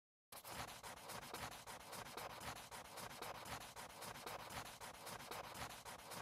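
Pencil scribbling on paper in rapid back-and-forth strokes, a fast even scratching, fairly faint, starting a moment in.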